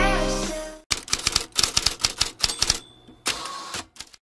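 Background music fades out, then a typewriter sound effect follows: a quick run of key clacks, then a brief ring and a short sliding sound near the end.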